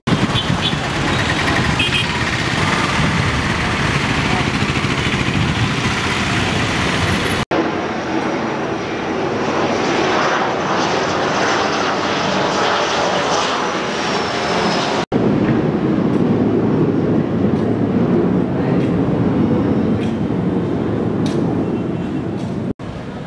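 Loud, steady outdoor noise with a vehicle-like rumble, cutting out abruptly twice, about a third and two-thirds of the way through.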